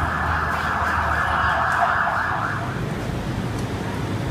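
A siren-like wailing sound with a low hum beneath it, cutting off about two-thirds of the way through and leaving a steady background rumble.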